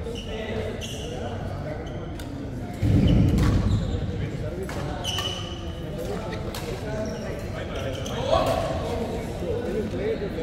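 Badminton rackets striking a shuttlecock in a rally, sharp hits ringing in a large sports hall, with voices in the background. About three seconds in comes a louder dull, low thump that lasts about a second.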